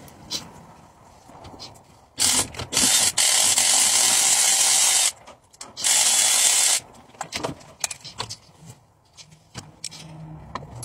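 Cordless power tool running in two bursts, one of about three seconds and a shorter one of about a second, on fasteners in a Ford 4.9L straight-six engine bay. Light clicks and clinks of hand tools follow.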